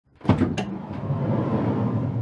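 A delivery van's sliding door is unlatched with a few quick metallic clicks, then slid open with a steady low rumble along its track.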